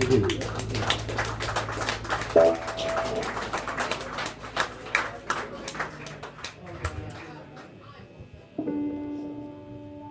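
A small audience clapping as a live rock band's last chord dies away, the clapping thinning out over several seconds. Near the end a single steady note, like a held guitar note, starts suddenly and rings on.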